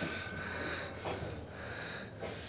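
A man breathing hard and gasping, with sharp breaths near the start and about a second in.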